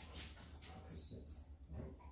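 Dogs' claws clicking faintly on a tile floor as they trot across the room.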